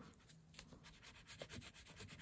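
Faint rubbing and scratching of a green oil pastel stroked back and forth across paper.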